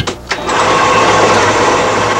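Photocopier running: a couple of clicks, then about half a second in a steady mechanical whir with a faint even tone as it makes a copy.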